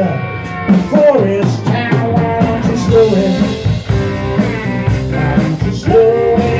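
Live blues band playing a slow, swampy Mississippi blues: electric guitar, acoustic guitar, electric bass and a drum kit.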